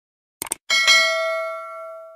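A quick double mouse click, then a notification-bell ding that rings on and fades out over about a second and a half: the sound effect of a subscribe-and-bell button animation.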